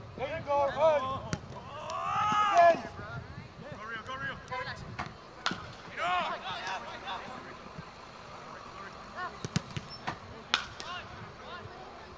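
Soccer players shouting calls across the field, with several sharp thuds of the ball being kicked on the turf.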